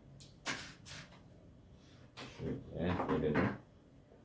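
Four short knocks and clatters within the first second, from things being handled on a table while a knife and a strip of apple fruit leather are picked up; a man's voice follows.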